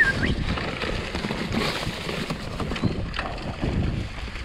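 Mountain bike rolling downhill on a leaf-covered, stony forest trail: a steady rumble of tyres over leaves and stones, with irregular knocks and rattles as the bike goes over bumps.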